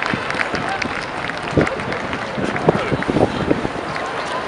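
Outdoor crowd ambience: many people talking at once, indistinct, with scattered short sharp sounds such as claps or knocks.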